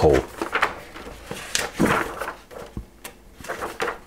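Paper pages of a ring binder being turned one after another: several short rustling swishes of paper.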